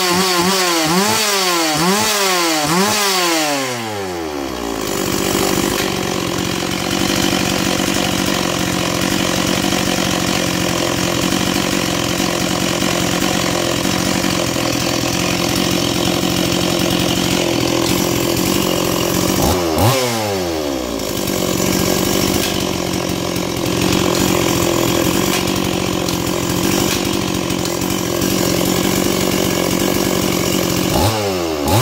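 Stihl 026 Magnum two-stroke chainsaw running with no cut. Its throttle is blipped several times in quick succession in the first four seconds, then it settles to a steady idle. It gets one more quick rev about twenty seconds in, then idles again.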